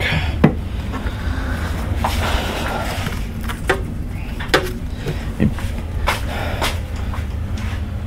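Hard objects being handled: a string of light knocks and clicks, about one a second, with some brief rustling, over a steady low hum.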